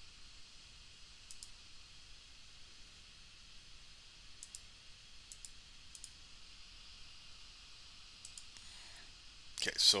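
Computer mouse clicks: a handful of sharp single clicks spaced a second or more apart, over a faint steady hiss. A man starts speaking near the end.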